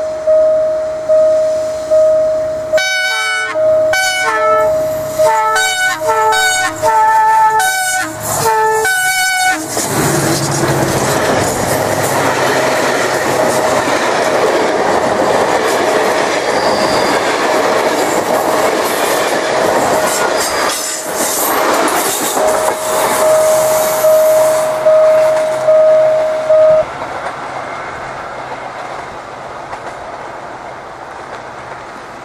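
Diesel locomotive's multi-tone horn sounding a string of short blasts at changing pitches, then the train passing close with loud wheel and rail noise, the horn sounding again partway through the pass before the train fades away.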